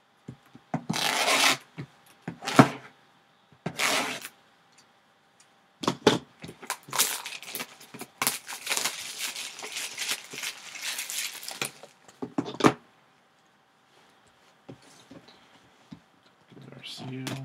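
Plastic shrink wrap crinkling and tearing as it is worked off a sealed trading-card box: three short bursts, then a longer stretch of crackling about halfway through.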